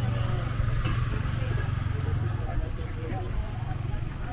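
Street ambience: passers-by talking over a steady low vehicle-engine rumble, which eases slightly near the end.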